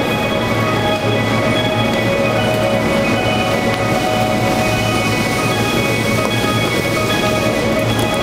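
Station platform departure melody: a chiming electronic tune of held notes that change every second or so, over a steady low hum.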